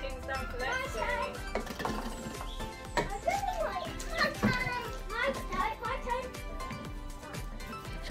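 Upbeat electronic background music, with children's voices and chatter over it. A few sharp knocks stand out around the middle.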